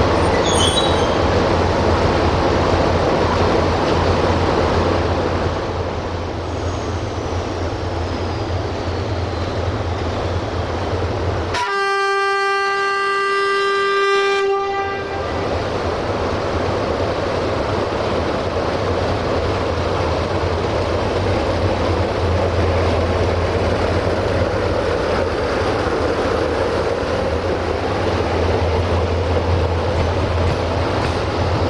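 CFR 060-DA (LDE2100) diesel-electric locomotive's Sulzer engine running with a steady low hum as it moves slowly. About twelve seconds in comes a single horn blast of about three and a half seconds on one steady note.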